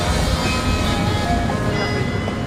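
Bells of the Munich town hall Glockenspiel chiming a tune, several held bell tones ringing over each other, with a low rumble of city street noise beneath.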